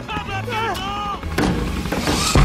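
Animated-film explosion effect: a sudden blast about a second and a half in, followed by a rushing roar. Before it a voice cries out, with music underneath.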